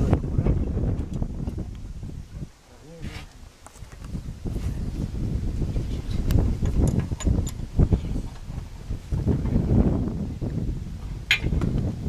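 Steel rod being bent by hand in a bench vise with a lever bar: surging low rumbling noise with a few sharp metallic clicks, the loudest about eleven seconds in.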